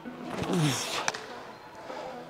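A man's short exertion grunt, falling in pitch, about half a second in, as he bursts into a sprint, followed by a sharp click about a second in. Faint background music runs underneath.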